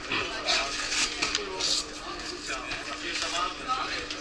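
Indistinct talk of several voices in a large hall, with a steady hum underneath.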